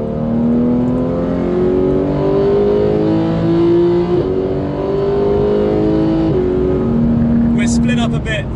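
Porsche 911 GT3 flat-six heard from inside the cabin, pulling hard under acceleration with its pitch climbing steadily. About six seconds in the pitch drops sharply as it changes up a gear, then runs steady.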